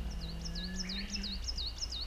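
A songbird singing a fast run of repeated high swooping notes, each dipping and rising again, about four a second.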